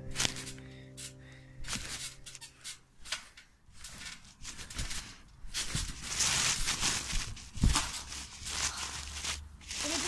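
Background music fading out over the first few seconds, then irregular thumps and rustles of someone moving on a trampoline mat, with one heavier thump near the eight-second mark.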